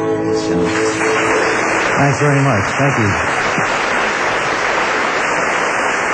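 The last acoustic guitar chord of a song rings out and stops under a second in, then a club audience applauds steadily, with a voice calling out about two seconds in.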